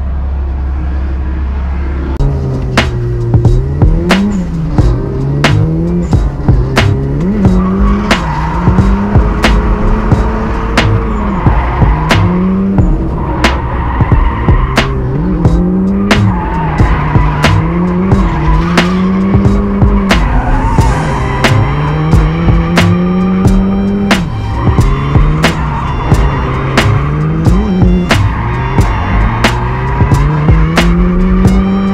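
Drift car engine idling low for about two seconds, then revving hard on track, its pitch climbing and falling again every second or two as the throttle is worked through the drift, with tire squeal.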